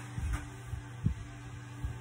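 A steady low hum with a few soft, dull thumps; the loudest comes about a second in.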